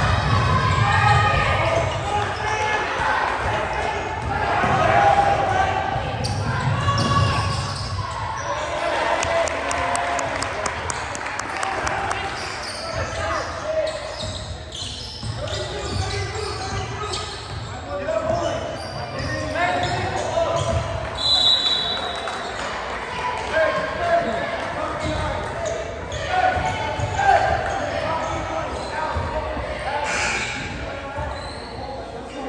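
Basketball bouncing and sneakers on a hardwood gym floor under a steady din of spectators' voices, echoing in a large hall. A short high tone sounds about two-thirds of the way through.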